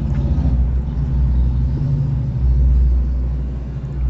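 A loud, low rumble that swells about two and a half seconds in and eases near the end.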